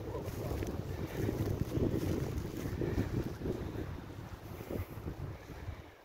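Wind buffeting the phone's microphone: an uneven low rumble that gusts up about a second in and eases off in the second half.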